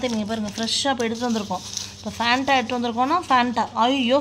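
A woman speaking, her voice continuing throughout with only brief pauses.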